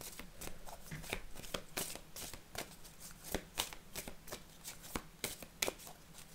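A deck of tarot cards being shuffled by hand: a continuous, uneven run of quick, soft card clicks and slaps.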